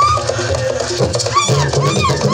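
Traditional Ugandan song with drum accompaniment: a high voice holds long, slightly wavering notes over a steady drumbeat.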